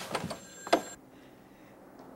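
Wooden door being opened and pulled shut, with small handle clicks and a sharp latch knock about three-quarters of a second in, followed by faint room tone.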